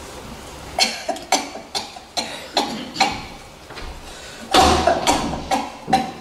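Footsteps on a wooden stage floor: an uneven run of sharp knocks, about two a second, with a louder, longer rough sound a little over halfway through.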